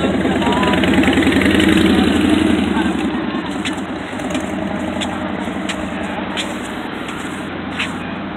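Motorcycle engine running with a fast, low firing pulse, loudest in the first few seconds and then fading as it moves away.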